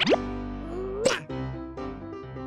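Light cartoon background music with steady held notes, over cartoon sound effects: a quick rising plop right at the start and another short rising pop about a second in.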